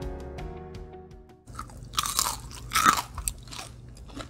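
Background guitar music fades out, then a crisp waffle-maker bánh xèo crunches and crackles, with two loud crunches about two and three seconds in and softer crackles around them.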